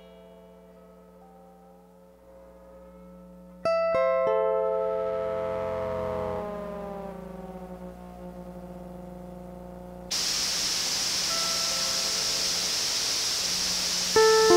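Lap steel guitar played through a looper and audio processor (the Organelle's Deterior patch). A chord is struck about four seconds in and its notes glide downward as they ring out, over a steady low mains hum. About ten seconds in, a loud hiss of processed noise cuts in suddenly and holds, with faint tones beneath it.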